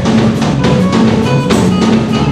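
Live band playing an instrumental passage: a steady drum kit beat under bass and electric guitar, with no voice.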